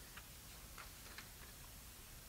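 Near silence: faint room tone with a few soft, irregular ticks as the paper pages of a book are handled and turned.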